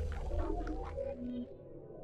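Fading tail of an electronic logo intro sting: a low drone and faint sliding tones dying away, dropping almost out after about a second and a half.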